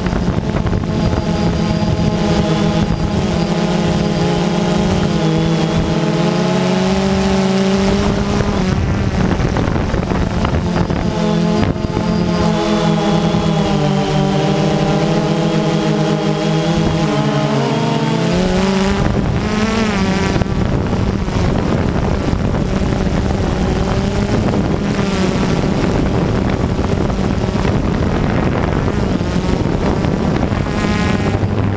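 DJI Phantom 2 quadcopter's electric motors and propellers whirring, heard from the camera on the drone itself. The pitch of the hum wavers and slides up and down as the rotors change speed, most markedly about two-thirds of the way through.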